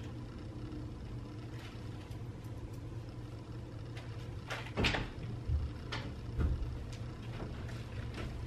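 A door latch clicks and a door opens about halfway through, followed by a few soft low thumps, over a steady low room hum.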